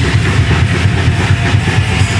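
Heavy metal band playing live at full volume: distorted guitars and bass over rapid, even kick-drum beats, heard as one dense wall of sound.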